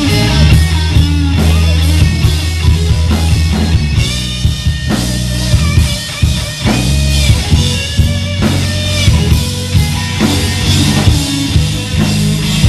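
Live rock band playing loudly: electric guitar, electric bass and drum kit, with a heavy bass line and steady drum hits.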